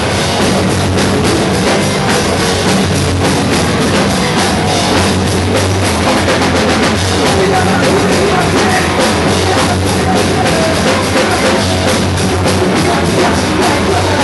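A loud live rock band playing, with a full drum kit hitting steadily under dense amplified instruments, without a break.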